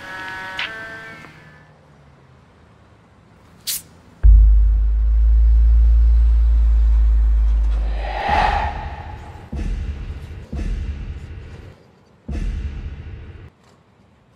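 Film soundtrack: a short musical phrase fades out, then a loud, very deep bass drone holds for about four seconds. A whoosh and several rumbling bursts follow.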